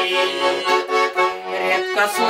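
Button accordion playing a traditional folk tune in held chords.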